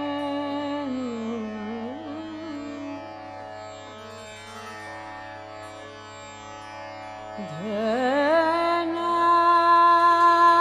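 Female Hindustani classical (khyal) singer in Raga Bhairavi over a steady drone, without percussion. She holds a note that slides down about a second in, sings a quieter, lower passage, then near the end sweeps up in a long glide to a louder held note with quick ornamental shakes.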